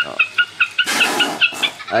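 Recorded lure call of the rẽ đuôi xòe snipe, played on repeat through a bird-trapping amplifier and horn loudspeaker: a rapid run of short, high chirping notes, about five a second, that stops near the end.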